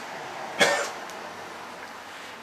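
A single short cough about half a second in.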